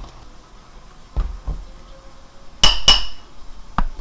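A metal spoon knocking against a ceramic bowl while soybean paste is spooned onto chopped chilies: two dull knocks, then two sharp clinks about a third of a second apart that ring briefly, and a light click near the end.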